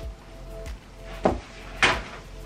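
Soft background music, then two sharp knocks in the second half, about half a second apart, the second louder: objects being handled and set down on shelving.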